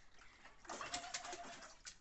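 Water splashing and sloshing in a plastic bathing tub as a baby slaps at it with his hands, starting about two-thirds of a second in and running until just before the end. A short, steady high tone sounds in the middle.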